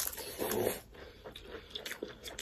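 Close-up eating sounds of people chewing a mouthful of food by hand-fed bites: wet chewing and lip smacks, with a louder burst about half a second in and a few sharp mouth clicks near the end.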